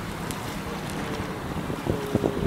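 Wind buffeting the microphone over the rush of water alongside a small moving boat, a steady noisy rumble.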